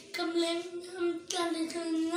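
A boy singing in short phrases, his voice holding notes at a fairly level pitch.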